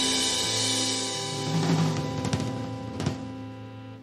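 The closing bars of an electric blues band recording: a held final chord rings out and slowly fades while the drums add a few last strokes about two to three seconds in.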